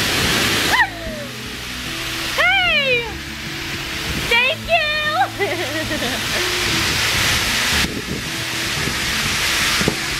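Air rushing into a giant balloon from an inflating blower, coming in several loud surges that cut off and start again. A girl inside squeals and laughs briefly a few times over it.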